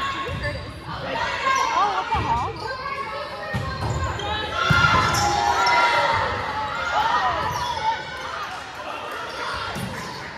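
Volleyball rally in a gym: repeated thuds of the ball being played and players' feet on the hardwood floor, with players calling out to one another, all echoing in the hall.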